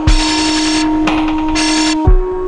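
Dark experimental electronic music: a harsh, buzzing noise texture over a steady low drone tone, with a deep kick drum hit at the start.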